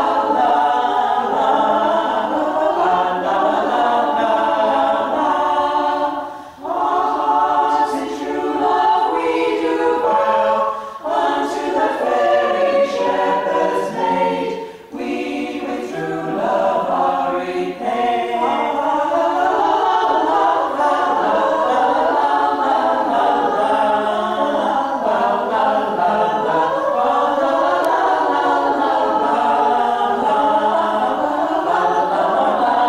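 A ladies' a cappella group singing in several voice parts, with short breaks about six and fifteen seconds in.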